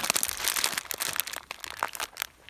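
A plastic bag of dried conchigliette pasta shells crinkling as it is picked up and handled, with irregular crackles that die down near the end.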